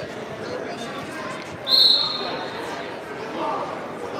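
A wrestling referee's whistle blows one sharp, high blast nearly two seconds in and rings for about a second before it fades, over the murmur of voices in a large hall.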